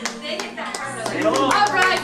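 A small group of people clapping, with several voices talking and calling out over it from about a second in.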